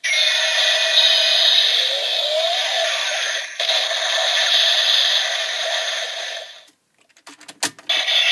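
Electronic sound effects from a Bandai DX Mega Ulorder transformation toy, playing through its small speaker with no bass. The effects cut off about two-thirds of the way in, followed by a few sharp plastic clicks as the toy is handled.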